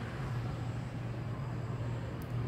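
Steady low rumble under a faint hiss: outdoor background noise with no distinct event.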